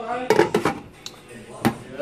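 Glass pot lid clinking against a stainless steel pan as lids are set on and lifted off, a few sharp clinks spread across the two seconds.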